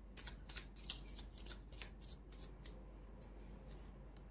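Faint, quick clicks and rustles of card stock as a tarot deck is handled and a card drawn, about four or five small snaps a second, thinning out toward the end.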